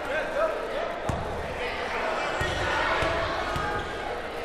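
A basketball bouncing on a hardwood gym floor, about four bounces, the last three about half a second apart. These are the ball being handed over and dribbled at the free-throw line before the shot. Voices carry through the gym behind it.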